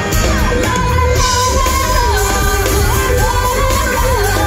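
Live blues-rock: a woman singing a melody that bends and slides in pitch, over electric guitar and a heavy bass-and-drum backing.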